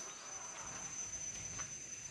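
Insects singing with one steady, high-pitched drone over faint outdoor background noise.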